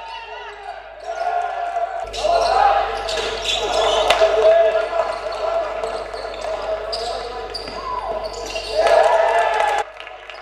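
Game sound from a basketball hall: a ball bouncing on the hardwood court, shoes squeaking and voices echoing in the hall. The sound gets louder about two seconds in and drops sharply just before the end.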